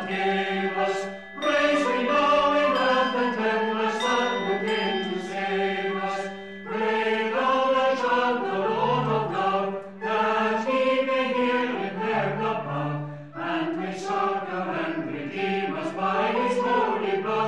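Background music: slow vocal chant or choral singing in long phrases with short breaks, over a steady low drone.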